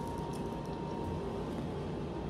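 Steady indoor room noise with a low hum, and no distinct event.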